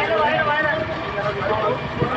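Several men's voices chanting and calling out together over general crowd noise, their pitches rising and falling.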